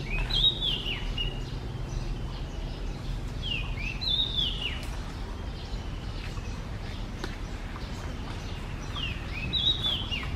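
A songbird singing a short phrase of quick whistled notes that slide up and down, repeated three times about four to five seconds apart, over a steady low background rumble.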